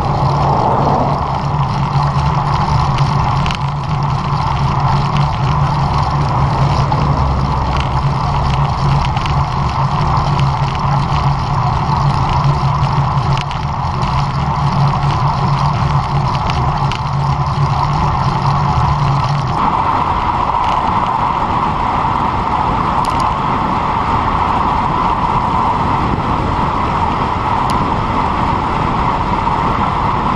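Wind and road noise on a bicycle-mounted action camera's microphone while riding a road bike. A slow climb at under 20 km/h gives way abruptly, about two-thirds of the way in, to a steadier, higher wind rush on a fast descent at close to 60 km/h.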